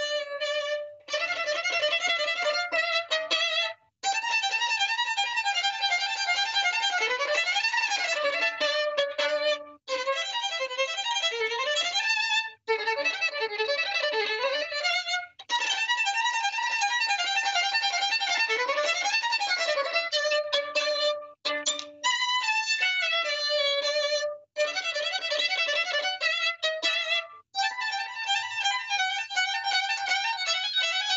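Solo violin playing a fast, flashy showpiece: quick runs that sweep up and down in pitch, the phrases separated by brief pauses.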